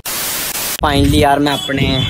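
Under a second of loud TV-style white-noise static, a glitch transition effect, which cuts off abruptly as a man starts talking.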